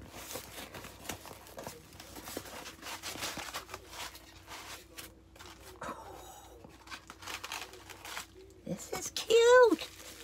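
Styrofoam packing around a small item being pulled and handled, a run of crinkling, crackling and tearing sounds as it is unwrapped. Near the end comes a short, loud vocal sound whose pitch rises and falls.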